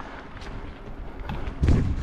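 Mountain bike rolling down a dirt singletrack, heard from a helmet-mounted camera: a low rumble of tyres and bike rattle with a few sharp clicks, and a louder low rumble of wind buffeting the microphone near the end.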